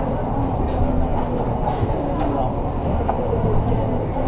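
Indoor ice rink ambience: indistinct voices over a steady low rumble, with a few faint sharp clicks.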